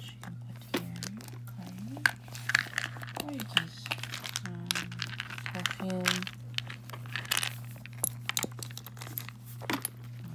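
Rustling, crinkling and light clicks of small items being handled and pushed into a lambskin leather flap bag, over a steady low hum.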